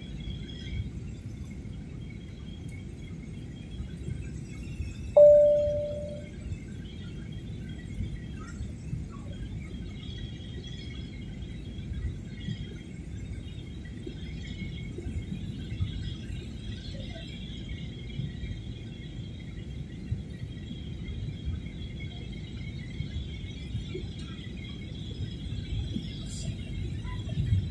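Steady low cabin noise of an airliner in flight, with a single cabin chime about five seconds in that rings briefly and fades.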